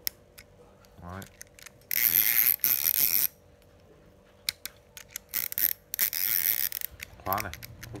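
Small round baitcasting fishing reel ratcheting: two dense bursts of rapid clicking, one about a second and a half long and a shorter one later, with scattered single clicks between them as its side-plate lever is worked. The lever has lost its retaining screw, but its switching function still works.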